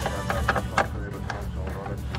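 Music playing, with several short sharp clicks in the first second.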